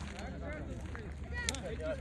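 Indistinct chatter of several voices over a low steady rumble, with one sharp click about a second and a half in.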